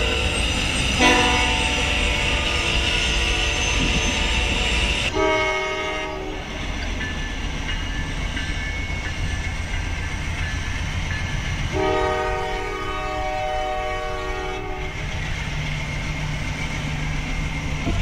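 Freight train's diesel locomotive horn sounding as the train passes: a long multi-note blast that ends about five seconds in, a short blast just after, and another long blast from about twelve to fifteen seconds. Under it runs the steady rumble of the locomotives and the cars rolling by.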